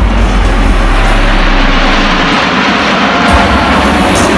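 Loud jet engine noise from a formation of small jet aircraft flying past; the deepest rumble drops away a little past halfway.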